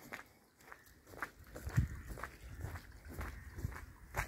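Footsteps of a person walking on a sandy dirt path, irregular soft thuds starting about a second in.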